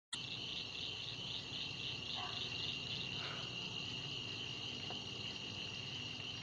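Crickets chirping in a steady, pulsing chorus over a faint low background hiss.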